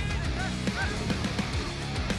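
A few short goose honks over guitar music.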